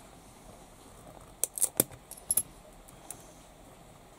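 Small screwdriver prying the trim ring off a multicolour LED lamp's head: a quick run of sharp metal-on-plastic clicks about one and a half seconds in, then two more just after two seconds.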